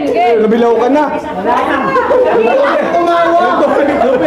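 Several people talking over one another at once: lively group chatter.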